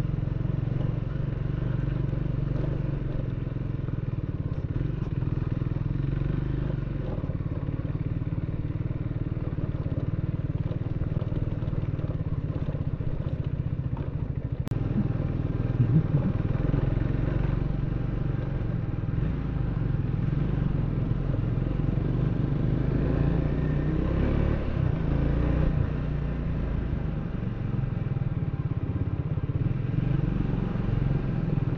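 Motorcycle engine running steadily at low revs while the bike rides over a rough, stony dirt track, with clatter from the bike. A few sharp knocks a little past halfway are the loudest moment.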